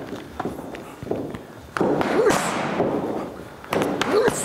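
Boxing gloves striking leather focus mitts in a pad drill, one sharp smack about two seconds in and another near the end, each trailed by a short hiss, with light footsteps on the ring canvas between.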